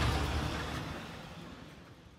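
Outdoor road-traffic and roadworks noise: a steady low rumble that fades out over the two seconds.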